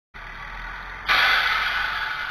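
Quiet running hum of a bus in stopped traffic, then about a second in a sudden loud hiss of compressed air from the bus's air brakes, fading slowly.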